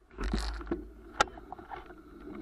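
Wind rumble and handling noise on the microphone of a moving handheld camera, with a sharp click about a second in.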